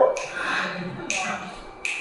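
Three crisp finger snaps, the first just after the start, the next about a second in and the last near the end, each ringing briefly in the hall.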